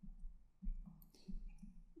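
A few faint clicks and taps of a stylus on a drawing tablet, spaced irregularly.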